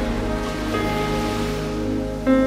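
Slow instrumental background music with long held notes, over a steady wash of ocean surf.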